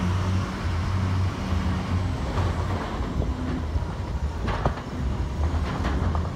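Vehicle engine running at low speed on a rough dirt track: a steady low rumble with a few sharp knocks and rattles from the body jolting over bumps, about four and a half seconds in.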